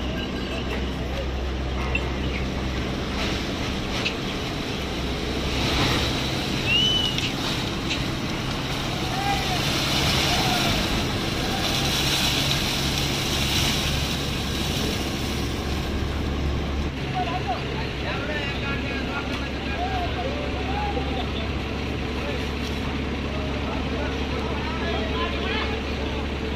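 Steady low drone of sugar factory machinery and idling heavy vehicles in a cane yard, shifting in level now and then, with voices calling out briefly here and there.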